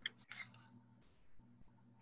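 A few brief, faint clicks and rustles near the start, then near silence with a faint steady hum.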